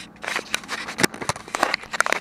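A quick run of small plastic clicks and scrapes from a Contour Roam 2 action camera being handled and its USB cable being plugged in.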